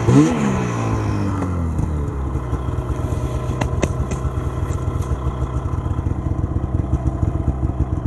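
Arctic Cat M6000 snowmobile's two-stroke engine revs up and falls back at the start, then settles to a steady idle with an even pulsing beat. A couple of sharp clicks come near the middle.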